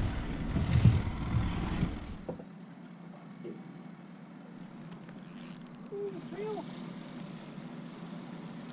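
Low rumble of wind and boat noise with a brief voice for about two seconds, then an abrupt change to quieter open-river ambience with a faint high hiss and a few faint short pitched sounds.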